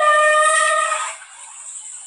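Bamboo flute (bashi) holding a mellow note of a slow, plaintive folk tune. The note ends about a second in, leaving only a breathy hiss until the next phrase.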